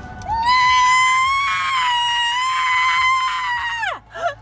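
A young woman screaming one long, high-pitched note, held steady for about three and a half seconds, then dropping away sharply at the end.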